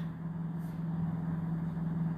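A steady low hum at one constant pitch over a light, even background noise.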